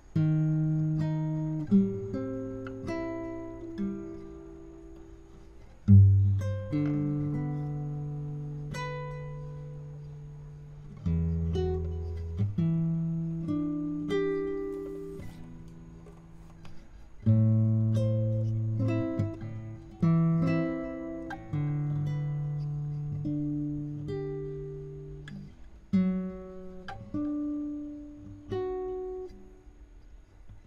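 Solo nylon-string classical guitar played fingerstyle: a slow, gentle melody picked over low bass notes, each note ringing and dying away before the next phrase begins.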